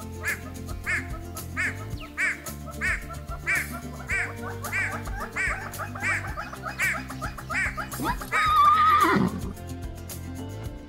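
Background music under a bird's call, repeated evenly about every two-thirds of a second, from a great hornbill. Near the end comes a louder horse whinny that wavers and then falls sharply in pitch.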